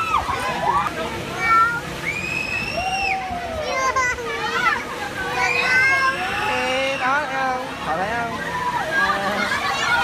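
Overlapping voices of riders on a spinning chair swing ride, mixing shouts and chatter with several long, high drawn-out yells.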